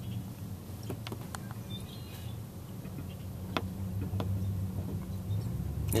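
Steady low hum of the idling car heard from inside the cabin, with a few sharp, separate taps of blackbirds' feet and beaks on the hood as they land and peck at french fries.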